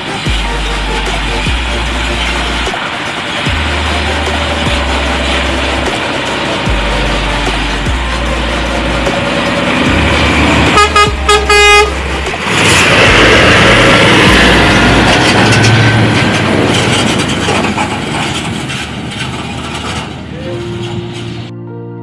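Scania truck's air horn sounding in a quick series of short blasts about eleven seconds in, over electronic music with a heavy beat. Right after, the Scania 540 tanker rig passes close, its engine and tyres loud, and the noise fades away over several seconds.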